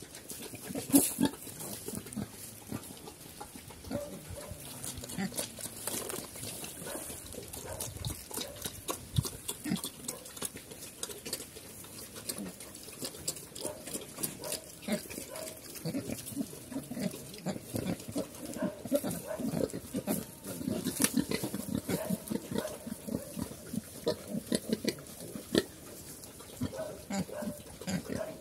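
A black sow and her piglets of the Cambodian Chrouk Kandorl breed grunting in their straw nest: many short grunts, coming thicker in the second half.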